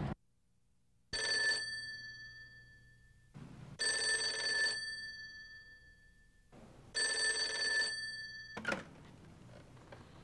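An old desk telephone's bell ringing three times, about three seconds apart, each ring dying away after it. The last ring cuts off with a short knock as the receiver is picked up.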